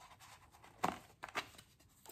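Faint handling of a small cardboard perfume gift box as it is opened: quiet rustling with two brief sharp scrapes, a little under and a little over a second in.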